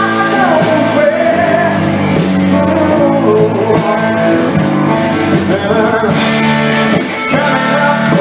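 Live blues-rock band playing: electric guitars and a drum kit, with a lead melody line that bends up and down in pitch over the chords.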